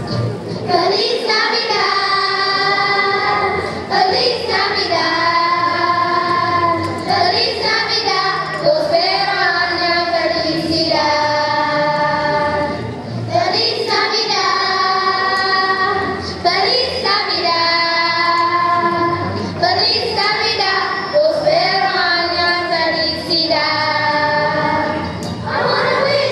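Children's choir singing a song in long held notes, phrase after phrase about every two seconds.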